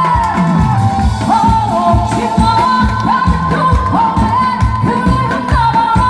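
A woman singing a Korean trot song into an amplified microphone over a backing track with a steady drum beat, her voice sliding up into each held note.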